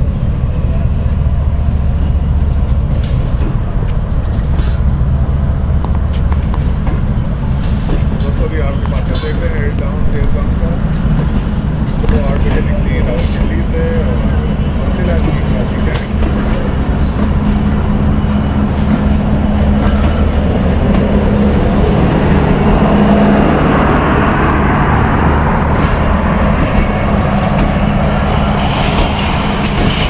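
Tezgam Express passenger coaches rolling past as the train departs: a steady low rumble with wheels clicking over the rail joints, and a rail hiss that swells about two-thirds of the way through.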